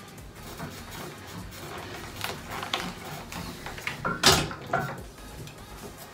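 Background music under the handling noises of ironing a shirt: fabric rustling and the iron moving on the ironing board. About four seconds in comes a short, loud noisy burst.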